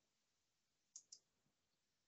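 Near silence with two faint, quick clicks about a second in, a computer mouse button being clicked.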